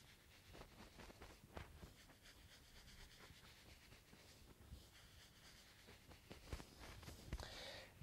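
Near silence, with faint rustling and rubbing of hands shaking and vibrating over a person's back through clothing during a massage.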